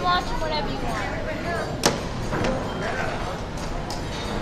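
Background voices talking, with one sharp click a little under two seconds in.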